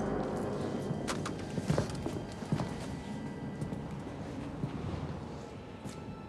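Footsteps of a man walking across a room: a series of uneven knocks, loudest in the first half, over a low steady drone.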